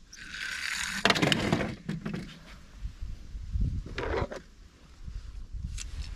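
Small die-cast toy car pushed along a weathered wooden rail, its wheels and body scraping, with a quick run of clicks and knocks about a second in and another scrape a few seconds later.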